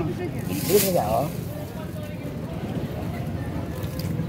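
A steady low engine rumble, with a short burst of voice and a single sharp knock just under a second in.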